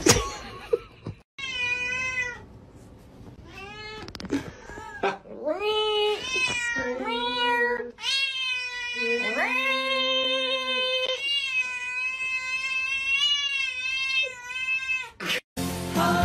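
A cat yowling in a series of long, drawn-out calls, several rising and then holding their pitch, the last lasting about four seconds. A brief loud noise comes at the very start.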